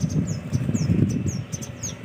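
Small birds chirping, a quick run of short, high, falling chirps, two or three a second, over a low, uneven rumble.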